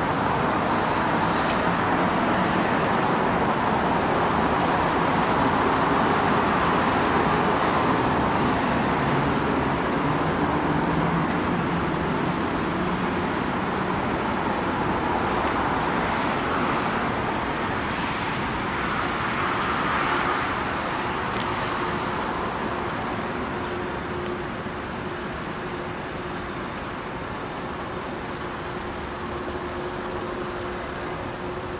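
Steady road traffic noise from cars and vans passing on a wide multi-lane city road: tyre noise with engine hum. It eases off a little over the last third.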